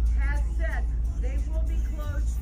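Steady low rumble of a stopped car's idling engine, heard inside the cabin, with bits of a woman's voice coming from outside the windshield.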